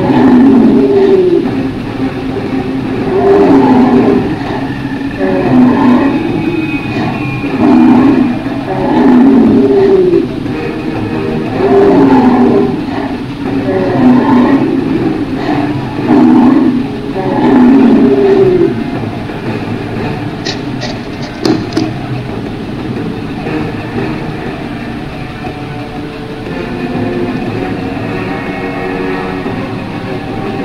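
A series of drawn-out creature calls, each rising and falling in pitch, about one every two seconds over a steady background noise; they stop about two-thirds of the way through, leaving the background and a few short clicks.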